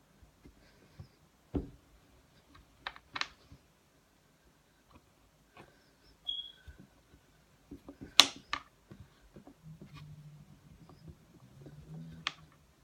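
Scattered light taps and clicks of hands and modelling clay against a tabletop while clay is rolled into strips, the sharpest click about eight seconds in.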